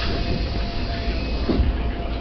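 Cabin noise of a commuter train standing at a station: a steady low rumble with a faint constant hum, a rustle right at the start and a short thump about a second and a half in.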